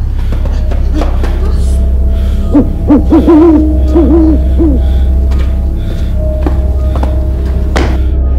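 Background music over a steady low drone. From about two and a half seconds in, a quick run of about six short pitched calls that dip and rise sits on top, with a few light knocks scattered through.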